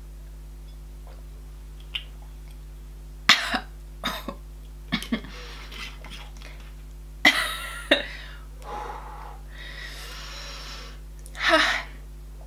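A woman coughing, clearing her throat and breathing out hard in a string of short bursts starting about three seconds in, with one longer breath out later and a louder cough near the end. It is her reaction to the burn of a strong ginger shot she has just downed.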